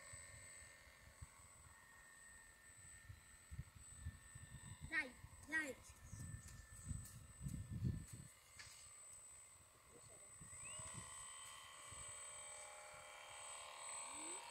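Faint whine of a radio-controlled model boat's motor running on the water, climbing in pitch about ten seconds in and then holding steady. Low wind rumble on the microphone in the first half, with two short voice sounds about five seconds in.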